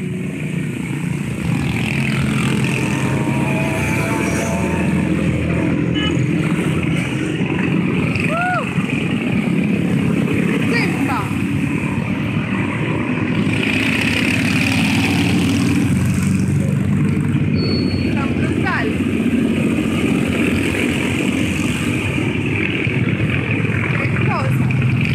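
A procession of classic and custom motorcycles riding past in a steady stream, their engines running continuously. Voices talk over the engine noise.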